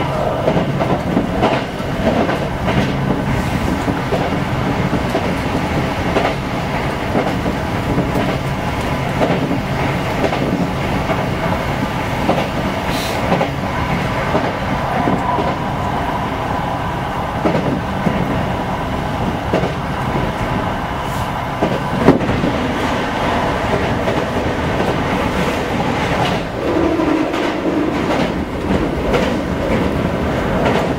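Toyo Rapid Railway 2000 series electric train running at speed, heard from inside the cab: a steady wheel-on-rail rumble with irregular clacks over rail joints, and one sharp knock about two-thirds of the way through.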